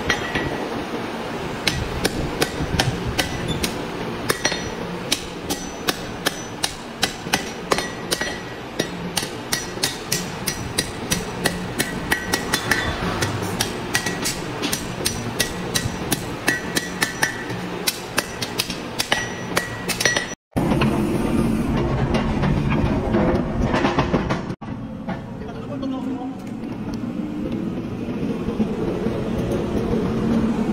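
A hand hammer striking a red-hot steel bar on an anvil, in a steady rhythm of about three blows a second, each blow ringing sharply. About twenty seconds in it cuts off, and a steady mechanical running noise follows.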